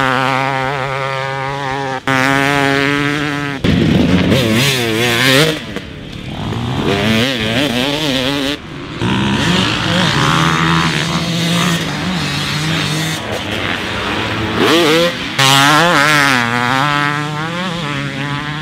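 Factory 300cc Husqvarna TC300 two-stroke motocross bike being ridden hard on the track, its engine pitch rising and falling again and again with the throttle. The sound jumps abruptly a few times as one clip cuts to the next.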